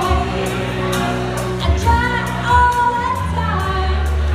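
A woman singing live into a handheld microphone over amplified accompaniment with bass and a steady beat.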